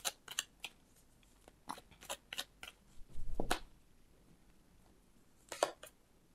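A deck of tarot cards being shuffled and handled by hand: a string of crisp card snaps and taps, a longer, louder rustle of cards about three seconds in, then a few more snaps near the end.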